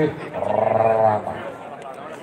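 A man's voice holding one long, steady vowel for about a second, with no words. After it comes a low background hubbub.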